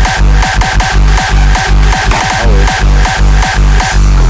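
Rawstyle hardstyle dance music: loud, distorted kick drums on a steady beat, about two and a half a second, under high synth stabs, with no vocals.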